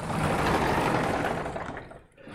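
A vertical sliding chalkboard panel being pushed up in its frame: a steady rolling rumble lasting about two seconds that fades near the end.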